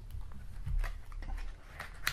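A deck of tarot cards being slid into a small cardboard tuck box by hand, with a few light taps and scrapes of card against cardboard.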